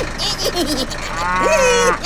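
A cartoon cow mooing: one long low moo starting about a second in, rising and then sinking in pitch. Short babbling character vocal sounds come just before it.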